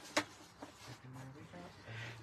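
Sheets of cardstock handled and shifted over a cutting mat, with one light click just after the start and a faint hummed 'mm' from the speaker in the second half.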